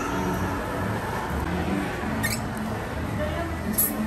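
Steady murmur of a busy indoor shop with two brief high squeaks, one about two seconds in that falls in pitch and a sharper one near the end, from latex balloons rubbing as they are handled.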